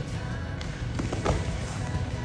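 A few soft thuds of bodies hitting a wrestling mat around the middle, as a chop breakdown drives a wrestler down and the two roll over, with steady background music underneath.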